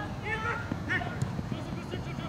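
Short shouts from soccer players across the field, over low thuds of running feet and a ball being kicked on grass.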